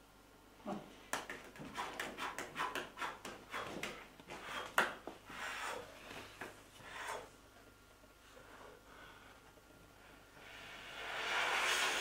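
A storyteller's sound effects for striking sparks from stones: a run of sharp, irregular clicks, about three a second, for several seconds. Near the end a breathy rush of air rises.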